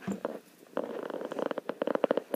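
Domestic cat purring close to the microphone: a fast, even, rattling buzz that starts about a second in.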